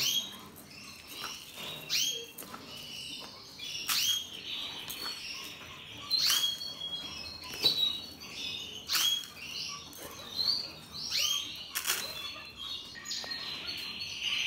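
Canaries chirping and calling, with a steady trill starting near the end, over a few short sharp clicks.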